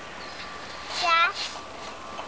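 A young child's short, high-pitched vocal call about a second in, over steady background hiss.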